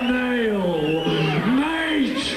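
A man's voice holding long, drawn-out vocal sounds rather than words. Its pitch slides slowly down through the first second and a half, then swoops back up near the end.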